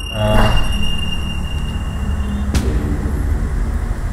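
A steady low rumbling hum with a short voice-like sound just after the start and a single sharp click about two and a half seconds in.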